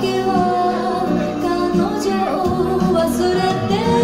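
Music with a sung vocal over a bass line, played at steady volume from vinyl records on a DJ's turntables and mixer.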